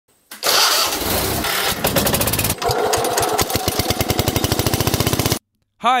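Cast-iron Kohler K532 twin-cylinder engine of a John Deere 400 garden tractor starting: a rough, noisy burst as it catches, then from about two and a half seconds a steady run of even exhaust pulses as it settles. The sound cuts off suddenly shortly before the end.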